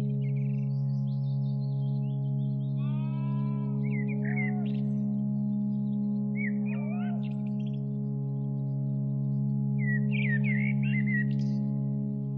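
Ambient meditation music: a steady drone of held low tones, with bird chirps and whistles laid over it at intervals. The bird calls come thickest about ten seconds in.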